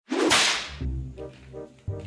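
A whip-crack swish sound effect just after the start, loud and fading over about half a second, followed by short repeated musical notes.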